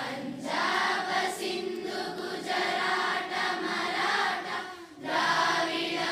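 A group of voices singing together in unison with long held notes, pausing briefly just before five seconds in.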